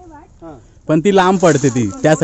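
People talking: faint voices at first, then one voice speaking loudly from about a second in.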